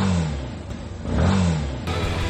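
Motorcycle engine revved twice, each rev rising and falling in pitch, about a second apart.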